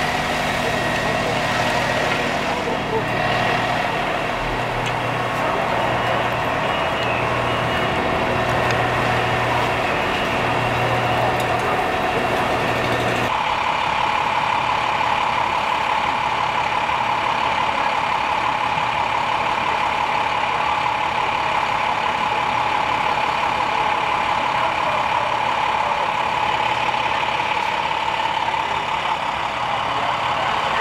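Fire apparatus engines running at a fire scene: a steady idle with a pulsing low hum. About 13 seconds in, the sound cuts to a steady, louder drone of engines running.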